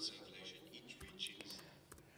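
Faint, indistinct speech, low and whisper-like, in a pause between louder spoken phrases.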